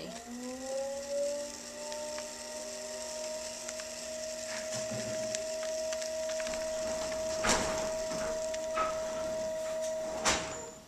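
Electric pottery wheel motor running with a steady whine that climbs back up to speed in the first second or two, while a loop trimming tool scrapes leather-hard clay from the cup, with louder scrapes about halfway through and again a few seconds later.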